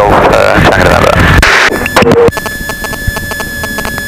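Loud, steady engine and propeller noise from a Socata TB10 light aircraft in flight, heard through the headset intercom. It cuts off abruptly about two seconds in, leaving a quieter electronic buzz with a steady whine.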